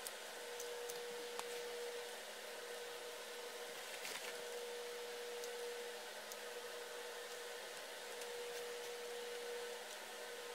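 Quiet workshop background hum with a thin steady tone that fades in and out a few times, and a few light ticks and taps of hands working a hot glue gun against a plastic mold.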